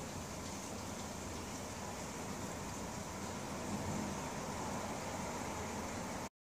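Steady background noise, an even hiss over a low rumble, with no distinct event.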